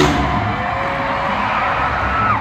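Freestyle motocross dirt bike engines revving, holding high steady notes that step between pitches.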